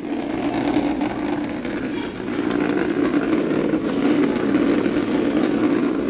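Small plastic child's chair being pushed along a vinyl tile floor, its legs scraping in one continuous rough drag.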